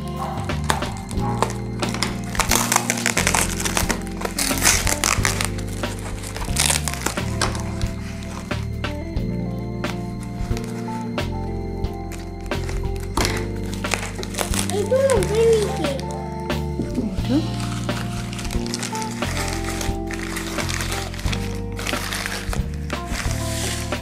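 Background music with slow, steady chord changes, over the crinkling and snipping of scissors cutting through packing tape and foam wrapping, busiest in the first few seconds.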